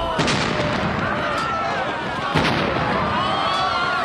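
Loud bangs, one just after the start and another a little past two seconds, over a dense, continuous din with many overlapping voices, like a battle or crowd scene.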